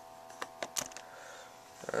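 A few light clicks and taps of handling noise, spread over the first second, above a faint steady hum.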